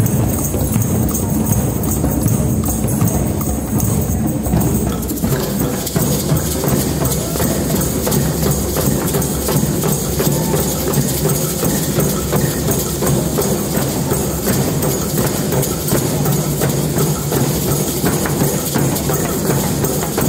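A drum circle of many hand drums, djembes among them, played together in a dense, steady rhythm. A brighter rattle of small percussion joins about five seconds in.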